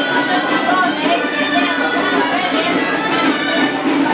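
Music playing steadily, with the voices of a crowd mixed in.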